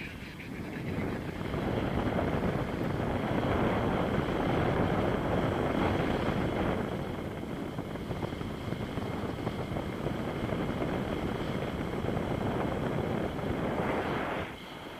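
Airflow buffeting the action camera's microphone during a paraglider flight: a loud, steady rush of wind noise that swells and eases in gusts.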